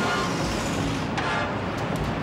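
Busy city street traffic: a steady rumble and hiss of passing cars and trucks.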